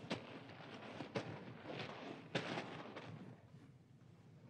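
Radio-drama sound effect of men crawling on their bellies up a ridge: faint, irregular scrapes and rustles that die away toward the end.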